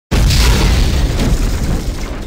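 Cinematic boom sound effect: one sudden, loud hit with a deep rumble that slowly dies away.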